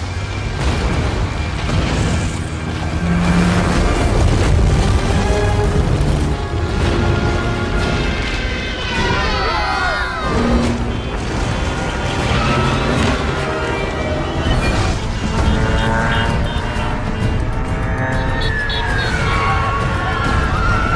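Disaster-film soundtrack: dramatic music over a continuous low rumble of destruction with booms, and a cluster of falling pitched glides about nine seconds in.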